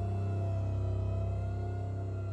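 Dark, eerie ambient background music: a steady low drone with sustained held tones above it.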